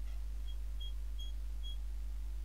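A low steady hum runs throughout, with four short, faint high-pitched beeps spread across the two seconds.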